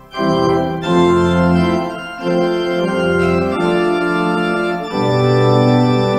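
Church organ playing a slow prelude in held chords that change about once a second, after a brief break between phrases right at the start.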